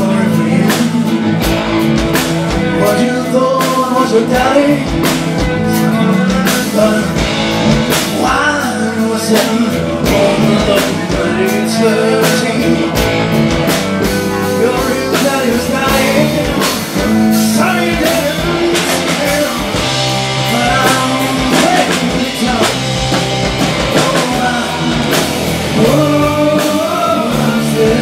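Live rock band playing with electric guitars and a drum kit, and a man singing lead vocals into a handheld microphone.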